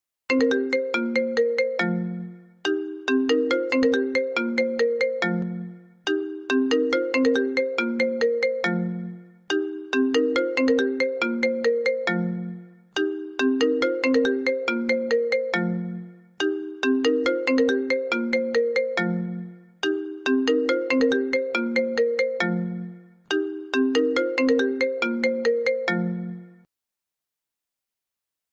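iPhone call ringtone playing: a short melody of bright, quickly fading notes that steps down to a low closing note, repeated eight times about every three and a half seconds.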